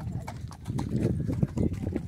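Hooves of several horses walking on a hard dirt road: an uneven run of clip-clop knocks.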